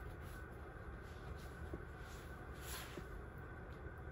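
Quiet room with a steady low hum and a few faint, soft rustles.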